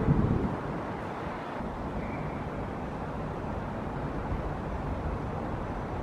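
Steady outdoor city background noise: a low, even rumble of distant traffic, with no distinct events.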